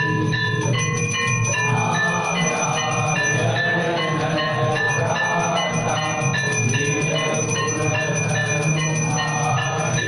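Temple bells ringing continuously during aarti: quick, repeated strikes at several different pitches, sounding together without a pause.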